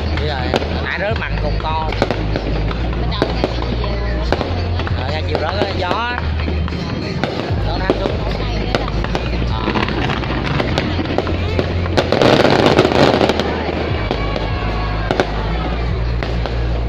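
Aerial fireworks bursting overhead, a steady run of sharp bangs and crackles, with a dense rush of crackling about twelve seconds in as the loudest moment.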